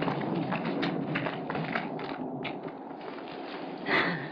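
Footsteps of a group of people tramping through woodland undergrowth, with irregular crackles and snaps. A single louder snap or thump comes just before the end.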